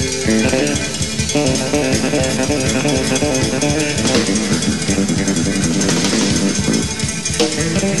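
Live band playing, with a six-string electric bass prominent over drums in a steady, busy rhythm.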